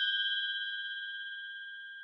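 Edited-in bell ding sound effect: one ringing chime that fades steadily.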